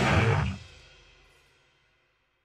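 End of a punk rock song: the band hits its final chord, stops about half a second in, and the ring dies away to silence within about a second.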